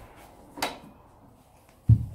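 A drawer being handled: a short sliding scrape about half a second in, then a loud thump near the end as it is shut.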